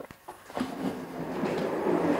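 A chair being moved into place on a stage floor: a few short knocks, then from about half a second in a rolling, scraping noise that grows louder.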